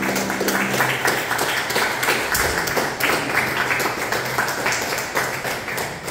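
Audience applauding, with the piano's last low note dying away in the first second.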